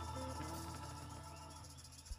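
Live funk band's closing chord ringing out, with a low bass note held underneath as the sound slowly fades.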